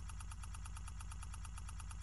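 Faint steady low hum with a rapid, even flutter: a background electrical buzz.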